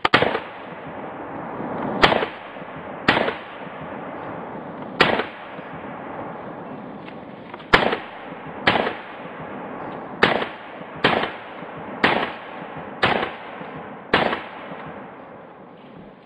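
Beretta CX4 Storm 9mm semi-automatic carbine firing eleven single shots at an unhurried pace, about one a second with a few longer gaps. Each sharp report is followed by a short echo.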